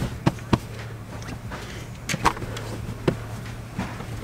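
Several short, sharp taps and knocks from hands handling bedding and a backpack inside a Jeep, over a steady low hum.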